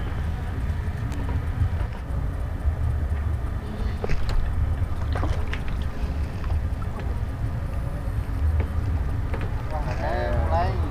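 A steady low rumble with a few faint clicks around the middle.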